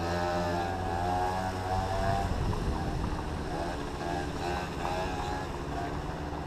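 Small Yamaha scooter engines running at low speed in slow traffic. Their pitch wavers up and down as the throttle is eased on and off, over a steady low hum.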